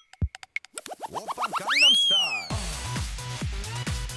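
Cartoon-style sound-effect sting: a few quick clicks, then a tone that swoops up and falls away. About two and a half seconds in, electronic music with a steady beat cuts in.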